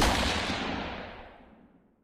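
A single gunshot sound effect: a sharp, loud shot whose tail fades away over about a second and a half.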